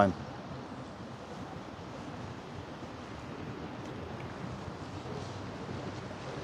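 Steady outdoor city-street background noise: a low hum of distant traffic with wind on the microphone.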